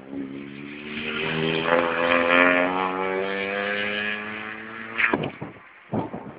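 Rally car passing at speed under hard throttle, its engine note swelling to its loudest about two seconds in, then fading as it goes away. A couple of sharp cracks near the end.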